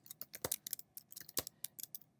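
Typing on a computer keyboard: a quick, irregular run of keystroke clicks.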